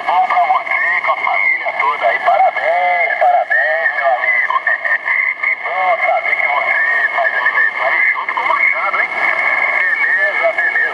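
Amateur radio voice signals on the 40-metre band, received by an Elecraft KX2 and played loud through the AlexMic amplified speaker microphone: thin, narrow-band distant voices with two steady whistle tones under them. The operator calls the propagation conditions very bad.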